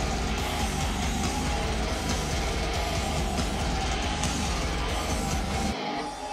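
Metal band playing live, an instrumental passage of heavily distorted electric guitar over a full band with a heavy low end. Near the end the low end drops out for a moment.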